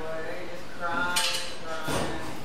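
Light clinking of small hard objects, with one sharper, brighter clink a little over a second in, over a faint voice.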